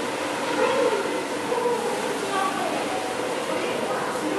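Indistinct voices of people talking, one rising and falling in pitch around the middle, over steady background noise.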